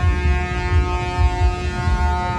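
A long, steady pitched tone with many overtones that starts suddenly and holds unchanged for about three seconds, over a low thumping background.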